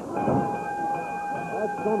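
Studio wrestling crowd clamouring as a wrestler storms the ring, with a steady high tone held for nearly two seconds over it.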